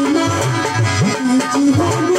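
Live Bengali folk music: a rope-laced dholak drum played with bass strokes that slide up in pitch, under a held melody line.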